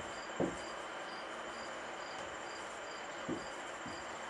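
A faint, high, insect-like chirp repeating about twice a second over a steady hiss, with two brief soft sounds, one about half a second in and one just after three seconds.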